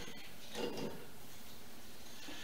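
Faint sound of a two-handled hand corker pressing a cork into a wine bottle, a brief soft swell about half a second in, over quiet room tone.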